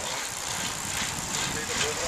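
Wind rushing over the microphone and tyre noise of a group of road bicycles riding on asphalt, with faint voices of riders in the background.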